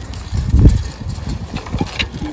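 Wind buffeting the microphone: a low, uneven rumble that gusts to its loudest about half a second in.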